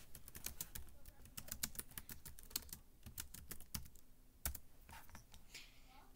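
Typing on a computer keyboard: a quick, irregular run of key clicks, with one louder click about four and a half seconds in.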